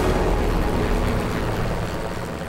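Military helicopter's rotor noise, a dense low thudding that stays loud, then eases slightly near the end.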